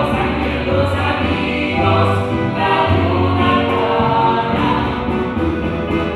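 A group of women singing a folk song together in harmony, with low sustained bass notes underneath.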